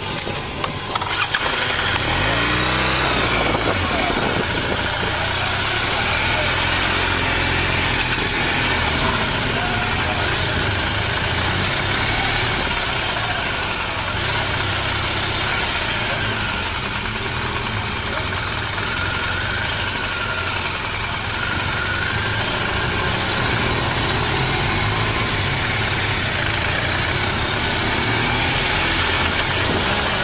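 Police motorcycle engine running as the bike rides along, its pitch rising about two seconds in as it speeds up, under a steady rush of wind and road noise on the camera microphone.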